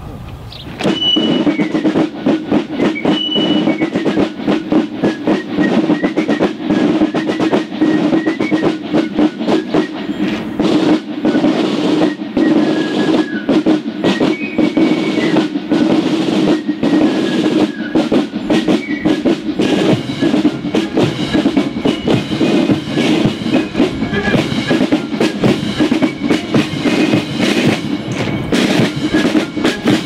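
Military marching band playing a march on the move, starting about a second in: dense, even snare-drum strokes with a high melody over them.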